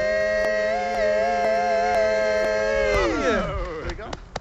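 Male barbershop quartet singing a cappella, holding a sustained closing chord with a wavering vibrato on the top voice. About three seconds in, all the voices slide down in pitch together and fade away.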